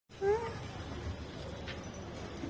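A tan street dog gives one short, rising whine about a quarter second in, then low street background.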